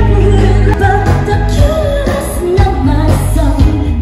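Amplified live band playing a song with a lead singer over PA speakers, with a steady heavy bass line under the vocal.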